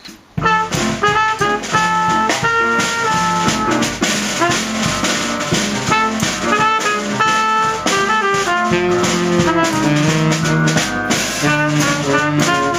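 Small jazz band of Selmer trumpet, Selmer tenor saxophone, Yamaha keyboard and Sonor drum kit coming in together about half a second in and playing on steadily, the two horns holding notes over the drums.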